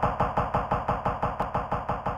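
Electronic music from a Korg Volca Sample sampler: a percussive sample repeated fast and evenly, about eight hits a second.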